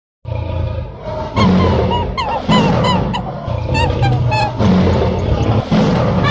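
Animal stampede sound effect: a continuous low rumble with many short pitched calls rising and falling over it, starting just after the opening, mixed with music.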